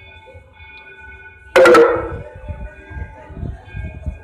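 A sudden loud metallic clang about one and a half seconds in: a few quick strikes that ring on and fade within about half a second, like a bell. Faint steady music-like tones sound throughout.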